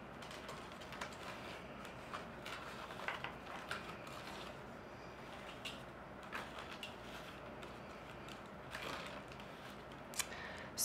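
A flat reed weaver being drawn in and out between the reed spokes of a basket: faint, scattered creaks, ticks and rustles of reed rubbing on reed.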